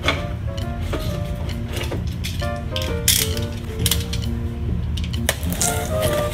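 A snap-off utility knife's blade slider ratcheting out in a series of scattered clicks, the sharpest about three seconds in and near the end, over background music.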